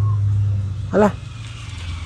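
A steady low hum with a man's voice saying one short word about a second in; the hum drops away soon after.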